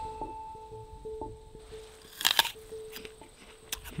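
Soft background music of gentle plucked string notes. A little past two seconds in comes a short, crisp crunch, a bite into a fresh apple.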